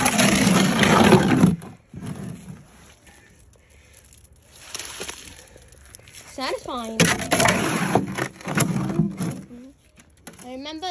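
Shovel scraping and scooping wet concrete in a plastic wheelbarrow, in two loud bouts: one of about a second and a half at the start, and a longer one of about three seconds in the second half.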